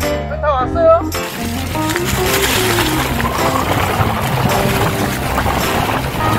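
Background music with a sung line; about a second in, a steady rushing noise joins under it: a mountain bike riding down a leaf-covered dirt trail, with tyre and wind noise on the handlebar camera.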